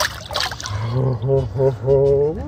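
Brief water splash in an ice-fishing hole as a released brown trout kicks off down through it, in the first half second. Then a man's voice in quick repeated syllables, about five in a row.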